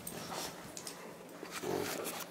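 Two dogs, a Boston terrier and a small white long-haired dog, playing over a ball on carpet: faint scuffling with light clicks, and a short low sound near the end.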